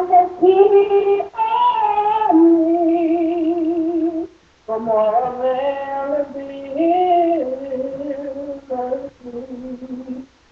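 A woman singing a gospel song unaccompanied, holding long notes with a wavering vibrato, with a brief pause for breath about four seconds in.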